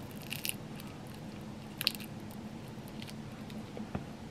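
A person chewing a bite of pizza, with a few short crisp crunches of the crust; the loudest comes about two seconds in.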